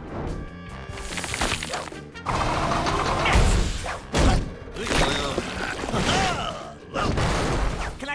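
Cartoon sound effects of a concrete mixer truck pouring concrete, over background music: several loud, noisy crashing rushes, the first starting about two seconds in.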